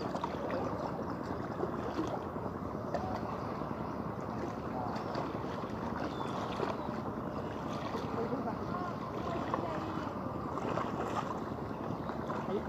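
Steady outdoor wash of wind and water lapping at a rocky shoreline, with faint distant voices.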